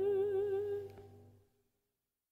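The final held note of a Korean art song, sung by a classical voice with wide vibrato over a sustained accompaniment chord, dying away about a second and a half in.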